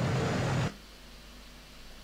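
T-72 tank's diesel engine running with a steady low rumble in played-back footage, cutting off abruptly under a second in and leaving only a faint hiss.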